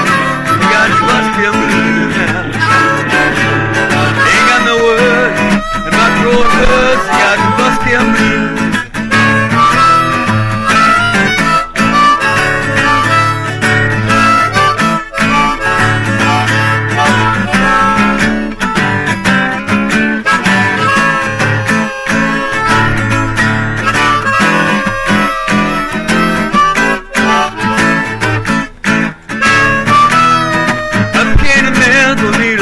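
Acoustic blues: a strummed acoustic guitar with a harmonica playing an instrumental break, no singing.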